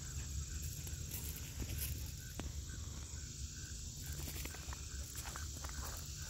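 A steady, high-pitched chorus of insects such as crickets, over a low rumble, with a few soft footsteps and clicks.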